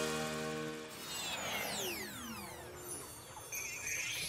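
Cartoon music chord fading out, followed by several falling whistle-like glides, the sound effect of the flying vehicles coming down to land, and a warbling sparkly trill near the end.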